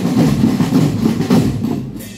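Marching drum band of snare, tenor and bass drums playing together in a fast, loud rhythm, easing off briefly at the very end.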